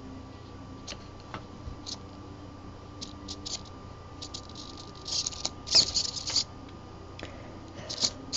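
Hands fiddling with a loose servo wire and its plug connector, giving scattered small clicks and scratchy rustles that are busiest from about five to six and a half seconds in.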